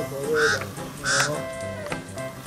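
Two short honks, goose-like, about half a second in and just after one second, over steady background music.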